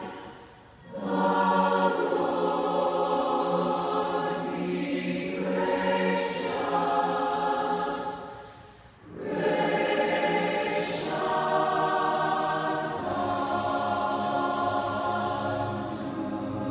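Mixed high school choir singing in sustained full chords, with two short breaks between phrases, about a second in and about nine seconds in.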